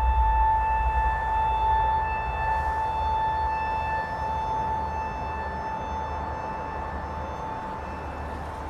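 A sustained high ringing tone from the film's soundtrack, one steady pitch with faint overtones, held over a low rumble that dies away in the first second; the whole sound slowly fades.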